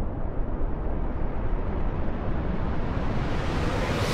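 Cinematic rumble of an animated logo intro, a deep noisy roar that swells and grows brighter, building to a bright whoosh at the very end.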